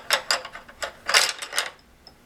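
A handful of wooden spindles laid into a compartment of a wooden spindle box, clattering in a quick run of knocks, with the loudest clatter just past a second in.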